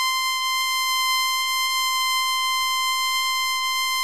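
A steady, high-pitched electronic tone with a buzzy edge, held at one unchanging pitch.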